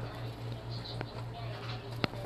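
Faint soft rustling of bihon rice noodles being stirred in an aluminium pot with a metal spoon, with one light click of the spoon about halfway through, over a steady low hum.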